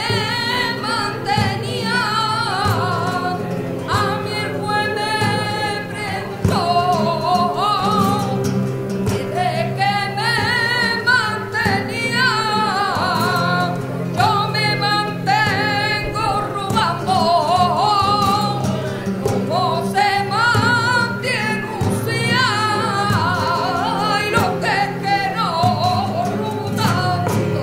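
Flamenco cante: a woman's voice singing long, ornamented phrases with a quavering wobble in pitch, each phrase breaking off after a few seconds, over the accompaniment of flamenco guitars.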